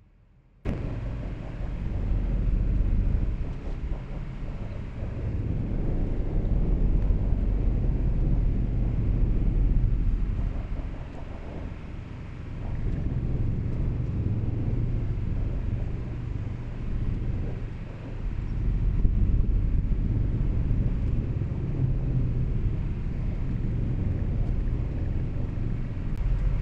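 Road and tyre noise inside the cabin of an electric Tesla at highway speed: a steady low rumble that begins about half a second in and swells and dips.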